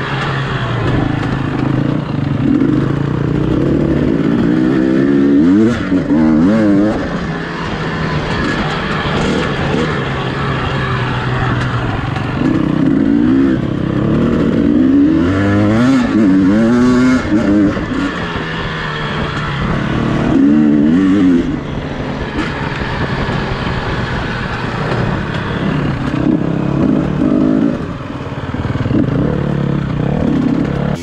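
Enduro dirt bike engine heard on board while riding a dirt trail, its revs repeatedly rising and falling as the throttle is opened and closed through the gears.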